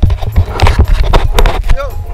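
Loud knocks and low rumbling of handling noise on an action camera's microphone as the camera is grabbed and turned around, with a short voice near the end.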